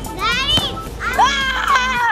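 A child shouting twice in high-pitched, excited cries: a short one, then a longer one.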